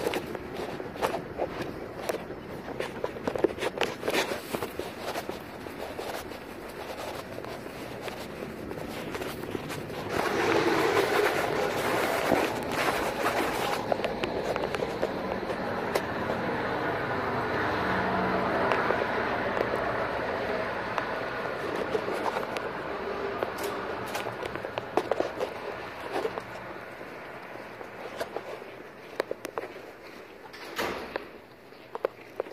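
Footsteps and handling noise from a handheld camera as its carrier walks, with scattered clicks and knocks. About ten seconds in, a louder steady rushing noise comes in and slowly fades.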